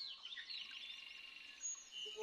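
Faint chirping of small birds: quick, repeated high notes.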